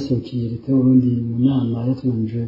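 A man's voice speaking in Kirundi at a steady, level pitch, with long drawn-out syllables.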